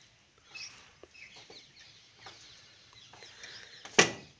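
Poultry clucking in short, scattered calls, with a few light knocks and one sharp knock right at the end.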